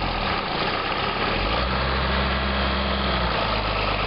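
A John Deere tractor's diesel engine running steadily and loudly, a low drone that starts abruptly and shifts slightly in pitch about a second and a half in.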